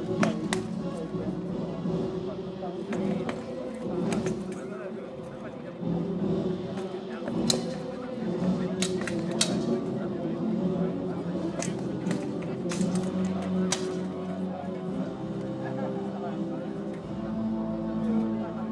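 Sword blows landing on shields and plate armour in a one-handed sword bout: about a dozen sharp, irregular strikes, several coming in quick flurries in the middle of the stretch, over a steady murmur of onlookers.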